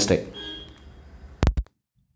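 The last syllable of a voice, then two sharp clicks close together about a second and a half in, after which the sound cuts off to dead silence.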